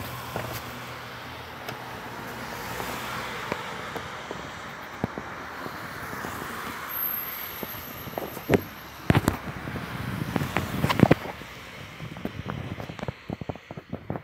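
Road traffic noise that swells and fades, like a car driving past, followed by close handling noise from about halfway through: a string of knocks and rubbing as the phone moves against a puffer jacket and jeans.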